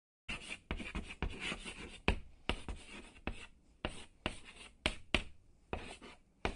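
Chalk writing on a chalkboard: a quick run of scratching strokes broken by sharp taps of the chalk, in an uneven rhythm, starting just after the beginning.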